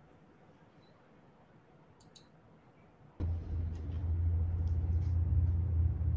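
Near silence broken by two faint clicks about two seconds in. A little past three seconds, a steady low hum starts abruptly and runs on.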